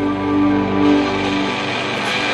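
Semi-hollow electric guitar playing the close of a rock song, its notes sustained and ringing. The low bass notes fade away about three quarters of the way through.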